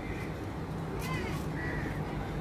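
A bird calling twice in quick succession about a second in, over a steady low background rumble.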